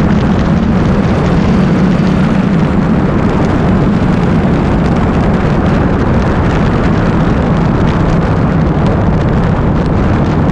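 BMW K1200R's inline-four engine running at a steady cruising speed, its low drone held nearly constant, under loud wind rush on the microphone.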